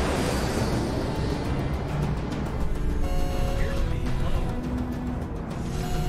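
Jet airliner engines giving a whooshing rush at the start, then a low steady rumble, under background music whose long held notes come in about halfway.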